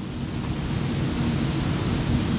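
A steady, even hiss-like noise that sets in as the speech stops and holds at one level throughout.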